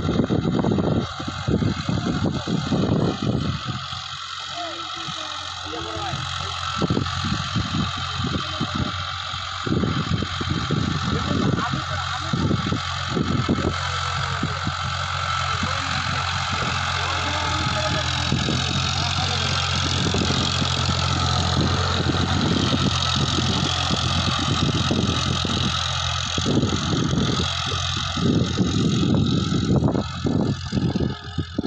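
An Eicher 551 tractor's diesel engine running steadily under load while it drives a rotavator through dry field soil, a constant low hum.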